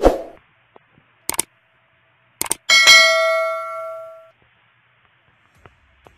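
Subscribe-reminder sound effect: a soft thump, two quick clicks, then a bright bell ding that rings for about a second and a half before fading.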